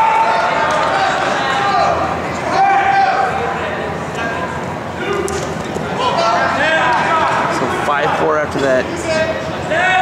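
Indistinct shouting from coaches and spectators echoing in a gymnasium, with a few light knocks from wrestlers moving on the mat.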